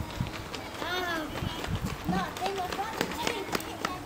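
Voices, with a single high call that rises and falls about a second in, over irregular low thumps of footsteps on paving as the person filming walks.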